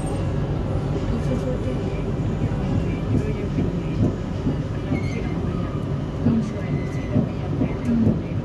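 Steady low rumble of a Kuala Lumpur MRT train heard from inside the car as it runs along the track.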